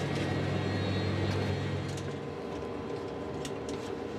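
Steady machinery hum of the International Space Station's cabin ventilation fans and equipment. A strong low hum gives way to a lighter, higher-pitched hum a little over halfway through, with a few faint clicks.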